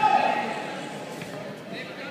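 A man's short, loud shouted call at the very start, then the background chatter of spectators echoing in a large hall.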